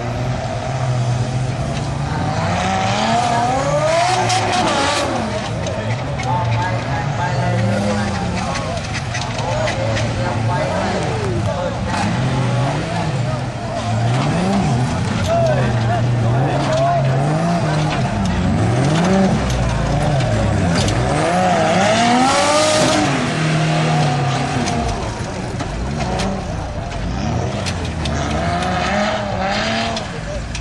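Off-road racing trucks' engines revving hard and dropping back over and over as they drive a dirt course, with the loudest peaks of revving about four seconds in and again past the twenty-second mark.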